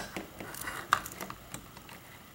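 Small clicks and taps of a clear plastic Raspberry Pi case and its cables being handled, with one sharper click at the start.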